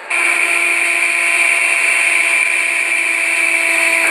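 Engine and propeller drone of a small passenger plane in flight, heard inside the cabin: a loud, steady hum with a high whine over it.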